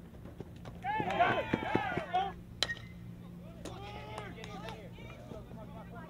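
Unintelligible shouting and calling of voices across a baseball field, loudest for about a second and a half near the start and again mid-way, with one sharp crack of a ball being hit or caught in between, over a steady low hum.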